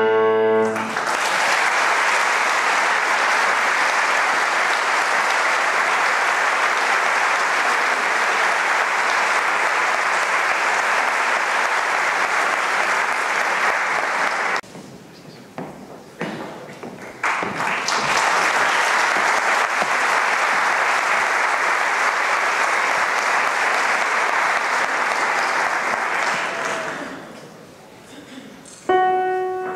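Audience applause, steady and dense. It breaks off for a few seconds a little past halfway, resumes, and fades out near the end. The final piano chord of a piece rings out in the first second.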